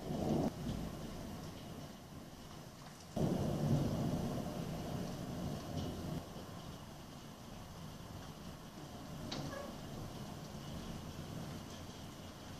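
Thunder: a short low rumble right at the start, then a louder clap about three seconds in that rolls on and fades away over the next few seconds, with steady rain underneath.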